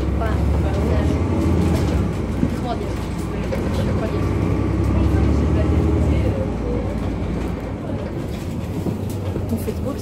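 VDL Citea CLF 120 city bus heard from inside the passenger cabin: engine and drivetrain rumble that swells about half a second in and again around four seconds in, then eases, with faint passengers' voices in the background.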